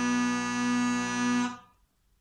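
Uilleann pipes pitched in B, made by Kenneth McNicholl, holding one steady final note of a reel over the drones, then cutting off about one and a half seconds in.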